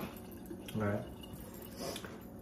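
One brief spoken "all right" just before the one-second mark, over low, steady room noise.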